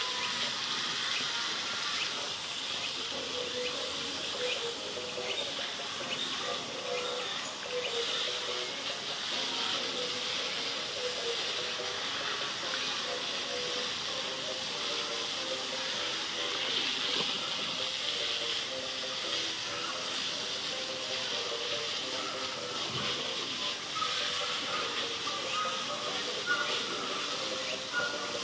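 Steady, even high-pitched hiss of outdoor ambience, with a faint lower murmur beneath it.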